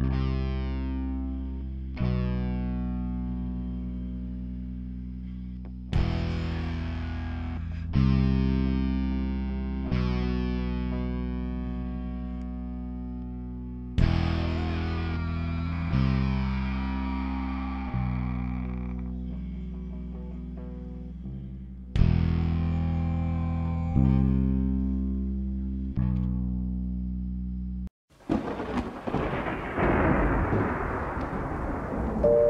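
Distorted electric guitar with effects playing sustained chords, a new chord struck about every two seconds and left to ring and fade. Near the end the music cuts off abruptly and a rumble of thunder with rain begins.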